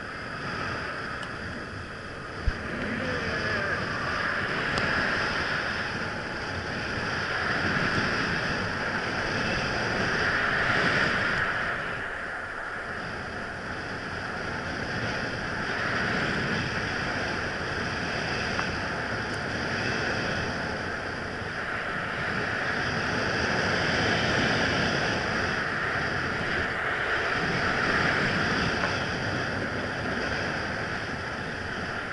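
Wind rushing over an action camera together with the hiss of snow being cut during a fast run down a powder slope, swelling and easing every few seconds. There is a single sharp click about two and a half seconds in.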